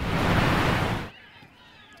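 A loud burst of rushing noise, about a second long, that cuts off suddenly, followed by faint open-air background.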